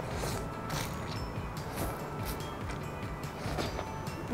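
Egg noodles being slurped off chopsticks in several short, noisy slurps, over quiet background music.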